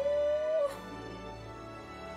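Sad film score: one long held note slowly rising in pitch, ending about half a second in, over a quieter sustained chord that carries on.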